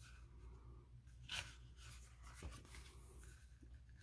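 Near silence, with a faint, brief paper rustle about a second in and a weaker one later: a page of a sticker book being turned by hand.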